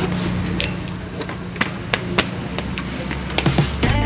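Small clicks and taps of batteries and their packaging being handled, over a steady low hum; music comes in near the end.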